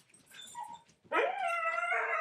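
An animal howling: one long call starting about a second in, rising at its start and then held at a steady pitch.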